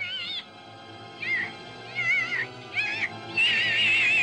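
The tiny human-headed fly's high-pitched, squeaky cries of "Help me!" as it struggles in the spider's web: several short wavering calls, the last the longest and loudest, over background film music.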